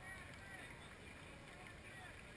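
Faint, distant voices over quiet, steady outdoor background noise.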